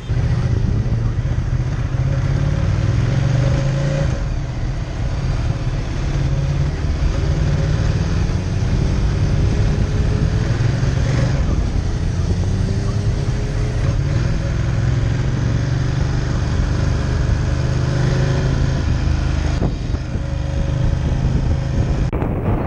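A 1262 cc motorcycle engine running under way, its low hum rising in pitch several times as the bike accelerates, heard from the rider's seat with traffic around it.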